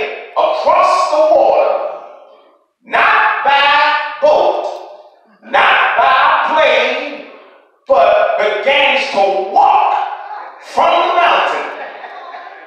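A man preaching through a microphone in short, loud phrases, each followed by a brief pause.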